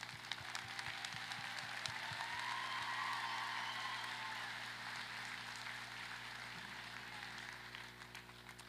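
Audience applause, many hands clapping, swelling over the first three seconds and then slowly tapering off.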